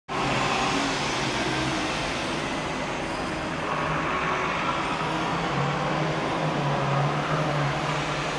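Steady road traffic: a continuous hiss of cars on the street with a low engine hum that grows a little stronger about halfway through.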